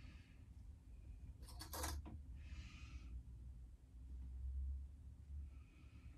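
Faint rustling of cotton fabric being handled and pinned by hand, with a short run of small clicks about one and a half seconds in, over a low steady room hum.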